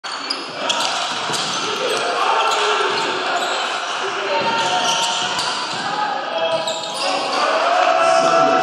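Basketball being dribbled on a hardwood court during live play, with voices calling out and echoing around a sports hall.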